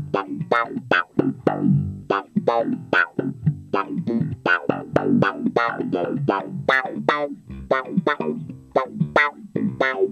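Electric bass played slap-style through a DOD FX25B envelope filter: a fast funk riff of sharply attacked notes, each note's tone swept by the filter in an auto-wah quack.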